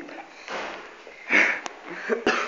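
A person's breathy sniffing sounds, the loudest one about a second and a half in.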